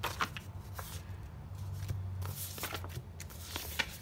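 Sheets of planner stickers being leafed through and shuffled by hand: scattered short paper rustles and flicks at irregular intervals.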